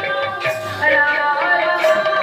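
Sambalpuri devotional kirtan music: voices singing long held notes, with a few strokes of the barrel drum.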